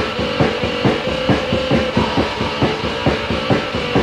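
Early death/thrash metal from a lo-fi 1987 demo tape: a drum kit beats a steady pattern of about three to four hits a second under a sustained guitar tone.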